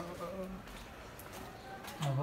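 Faint buzzing like a flying insect close by, after a brief bit of a man's voice at the start.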